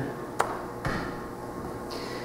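A pause between spoken lines: quiet room tone with one sharp click about half a second in and a fainter click just before one second.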